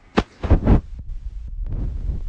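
Handling noise on a phone's microphone as the phone is moved about: a few dull low thumps in the first second, then a low rumble.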